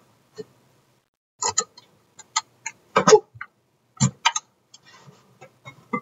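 A run of short, irregular knocks and clicks from kitchen things being handled on a counter, the loudest about three and four seconds in.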